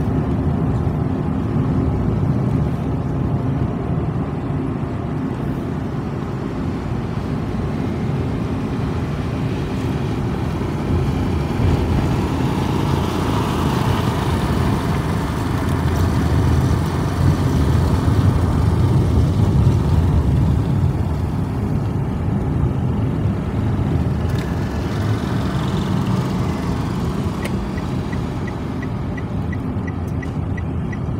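Steady low rumble of a car being driven, engine and tyre noise, swelling a little louder around the middle. A faint run of quick, even ticks comes near the end.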